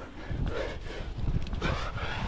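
A rock climber breathing hard, a breath about once a second, close to a helmet-mounted camera's microphone, over low rumble and scuffing of gloved hands and clothing against the rock.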